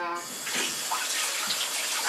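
Steady rush of running water that starts abruptly.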